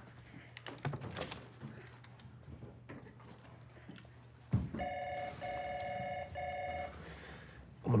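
An office desk telephone ringing: a steady ring in three quick back-to-back bursts, starting a little past halfway through just after a soft thump and stopping shortly before the end. A low hum sits under the quiet first half.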